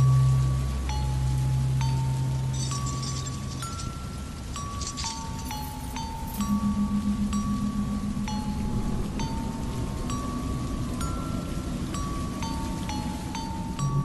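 Gamelan music: a slow melody of single struck metallophone notes, stepping up and down in pitch, each ringing about half a second to a second. A low hum sits beneath it, fading about four seconds in and returning near the end.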